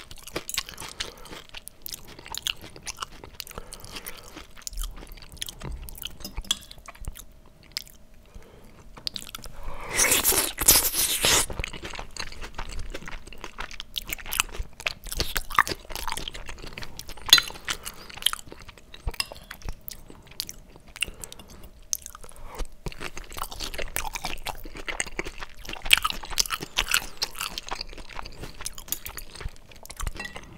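Close-miked mouth sounds of someone eating squid ink pasta with shrimp: wet chewing with many small crisp clicks and smacks, irregular throughout. About ten seconds in there is a louder rush of noise lasting about a second and a half.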